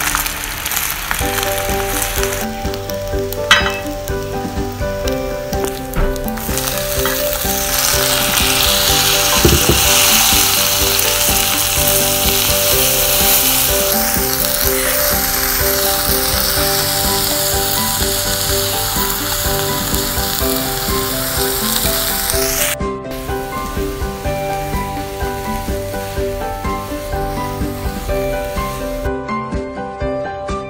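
Scrambled egg and tomato sizzling in a hot frying pan as they are stir-fried with a wooden spatula. The sizzle grows louder about eight seconds in and drops off abruptly a little past two-thirds of the way through.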